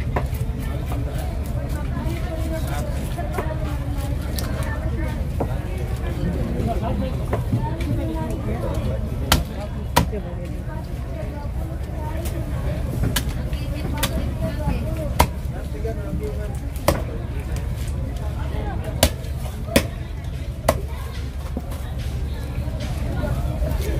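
A heavy machete-like knife chopping fresh tuna on a wooden chopping block: irregular sharp chops, the loudest spread through the second half, over background voices and a steady low rumble.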